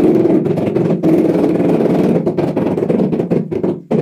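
A hand trowel scraping across cement mortar on a concrete floor: one continuous rough scrape that stops just before the end, then resumes briefly.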